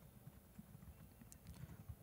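Near silence with faint computer keyboard typing: a few soft key clicks in the second half.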